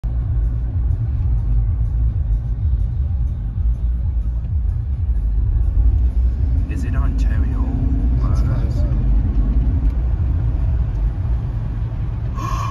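Steady low rumble of road and engine noise heard inside the cabin of a moving car. Some faint voice-like or music-like sound rises over it about seven seconds in.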